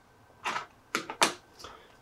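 Small 3D-printed resin parts of a 1/6-scale toy gun clicking as they are handled and fitted together by hand: several short, sharp clicks about half a second apart.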